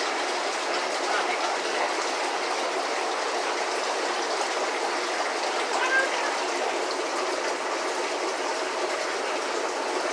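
Steady rushing and bubbling of aquarium aeration and filters running in many tanks.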